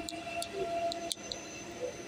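ICE 3 high-speed electric train pulling away, its traction drive whining in several steady tones, with a couple of sharp clicks from the wheels over the track, the first at the start and another about a second in. The sound slowly fades as the train moves off.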